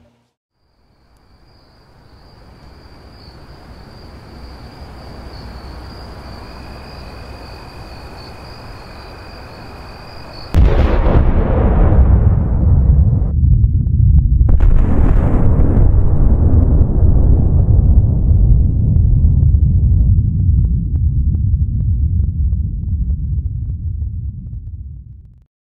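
Sound effect of a nuclear explosion: a low rumble swells with a thin steady high whine over it, then a sudden loud blast about ten seconds in becomes a long, heavy rolling rumble.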